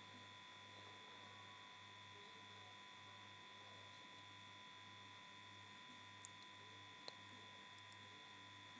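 Near silence: room tone with a faint steady hum, and two faint ticks near the end.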